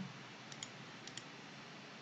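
A few faint computer mouse clicks, in two quick pairs about half a second apart, over low room hiss.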